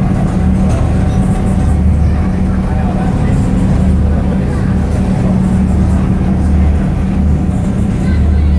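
Steady low drone of a river tour boat's engine, heard from inside its glass-windowed cabin.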